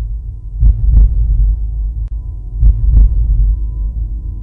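Heartbeat sound effect: pairs of deep thumps, one pair every two seconds, over a low steady drone.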